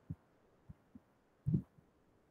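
Muffled computer keyboard keystrokes: a few scattered dull taps, the loudest about one and a half seconds in.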